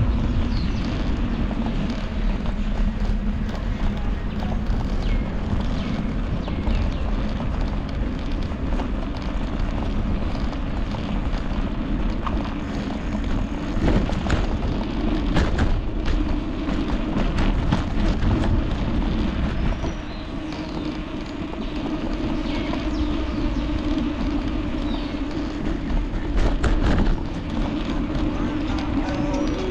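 Wind buffeting and rolling noise picked up by a handlebar-mounted GoPro Hero 9 on a moving bicycle, with a few sharp knocks as the bike jolts over bumps.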